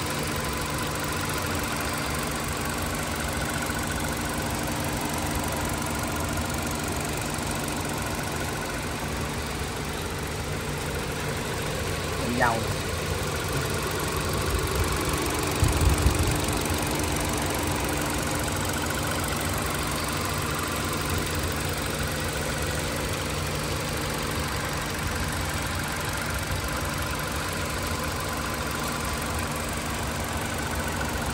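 The 1.4-litre four-cylinder petrol engine of a 2018 Hyundai Accent idling steadily, heard close up over the open engine bay. A brief cluster of low thumps about halfway through.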